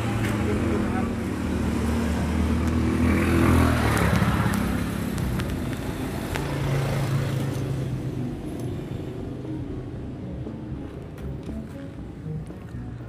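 A motor vehicle passing close by, its engine rumble and road noise swelling to a peak about four seconds in and then fading, over a steady background of traffic.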